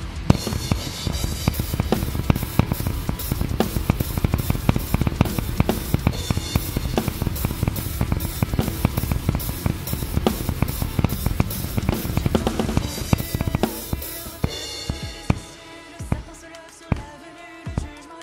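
Acoustic drum kit played hard along with a nu metal song's recording: fast, dense kick and snare hits under a wash of cymbals. About fourteen seconds in, the playing thins to single accented hits over quieter music.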